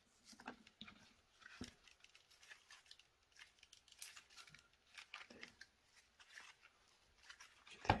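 Faint, scattered light clicks and rustles of a power-tool battery's plastic housing and wired cell pack being handled. The cell pack is lifted out of the housing and set back in.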